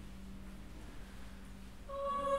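A hush in a choral performance: only a faint, steady low tone and room rumble remain. Just before the end a new sustained high note enters and holds.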